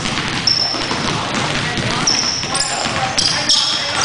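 Sneakers squeaking on a hardwood gym floor and a basketball bouncing during a pickup game, with voices in the echoing gym. The short, high squeaks come more often in the second half.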